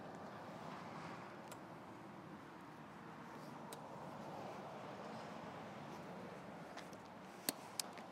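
Faint, steady outdoor background noise, with a few brief soft clicks near the end.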